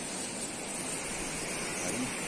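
A steady, even rushing hiss, with no distinct events.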